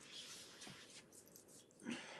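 Near silence: faint room noise, with one brief faint sound near the end.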